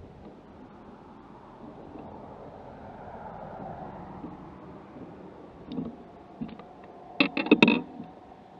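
Faint steady outdoor noise, then near the end a quick burst of loud knocks and thumps as a hooked bass is swung and landed into the boat.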